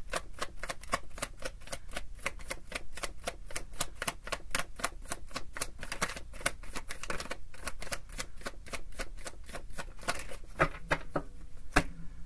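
A tarot deck being shuffled by hand, the cards slipping and snapping against each other in a rapid run of light clicks, about five a second. The clicks thin out and stop near the end.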